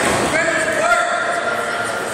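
A person's voice shouting a long, drawn-out call across the gym during a wrestling bout.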